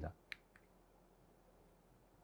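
Near silence: room tone in a pause between spoken sentences, with one brief faint click about a third of a second in.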